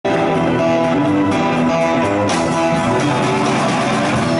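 Live rock band playing: guitar and sustained keyboard notes, with the drummer's cymbals coming in about two seconds in and keeping time after.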